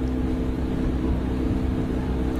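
Motor launch's engine running steadily under way, a constant drone with a steady hum.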